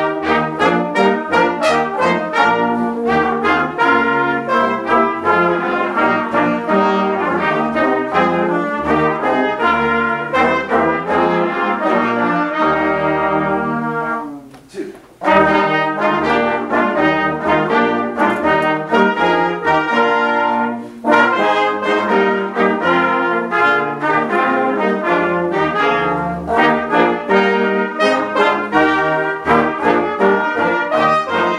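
A youth brass ensemble of trumpets and trombones playing a piece together in steady rhythm. About halfway through the music breaks off for a moment, then starts again.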